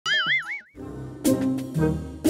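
A cartoon sound effect: a wobbling, warbling tone with a quick falling slide, lasting well under a second. It is followed by an upbeat title jingle that comes in with punchy musical hits about a second in.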